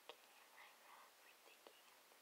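Near silence: room tone with faint breathy sounds and a couple of soft clicks.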